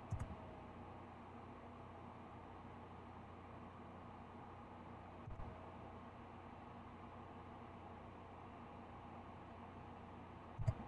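Near silence: a faint steady hiss and low hum of room tone. There are a few soft clicks just after the start and one more about five seconds in.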